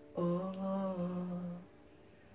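A man humming a short unaccompanied phrase of about a second and a half, stepping up a note and back down before stopping.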